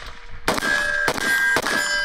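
Three quick AR-15 rifle shots about half a second apart, each answered by the clear, sustained ringing of a struck steel target, the rings overlapping and carrying on after the last shot.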